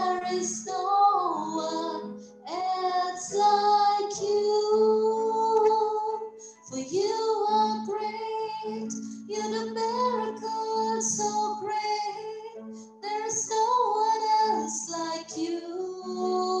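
A woman singing a slow worship song solo into a microphone, in long held phrases with short breaths between them.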